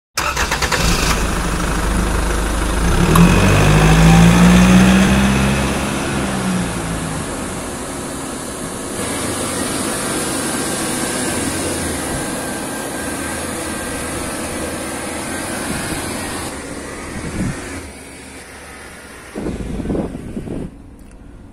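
A vehicle engine running, with a louder engine note that swells up and falls away again about three to six seconds in.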